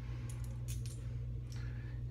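A few faint, light clicks as a double-edge safety razor and its blade pack are picked up and handled, over a steady low hum.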